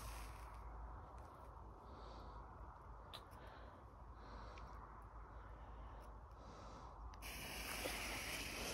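Faint outdoor quiet with a few small clicks; about seven seconds in, a steady hiss starts as a ground firework's lit fuse catches and fizzes.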